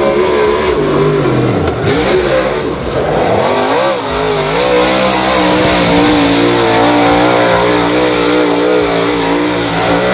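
A dirt-track modified race car's engine at racing revs. The revs drop sharply about two seconds in and climb back over the next two seconds, then hold high with a slightly wavering pitch as the car slides through the turn.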